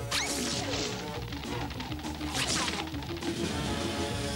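Two quick cartoon whoosh sound effects of characters dashing off, one just after the start and one about halfway through, over background music.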